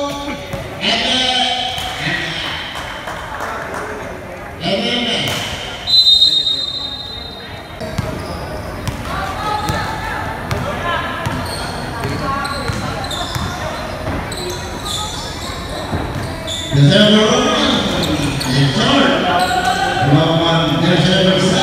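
Basketball being dribbled on a hardwood gym floor during play, with players' and spectators' voices echoing in the hall. A brief shrill whistle sounds about six seconds in, and louder crowd shouting rises near the end.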